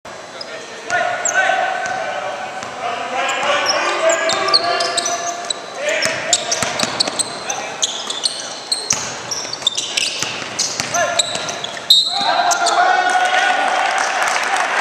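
Live basketball game on a hardwood court: sneakers squeak in short high chirps and a ball bounces among shouting voices, echoing in a large gym. Near the end the sound jumps abruptly louder and stays up, with voices throughout.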